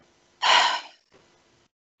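A woman's single quick, noisy breath in through the headset microphone, lasting about half a second and coming about half a second in. A faint trace of breath follows it.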